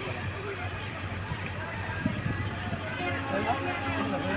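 Indistinct voices of people talking in the background over steady outdoor noise and a low, steady hum.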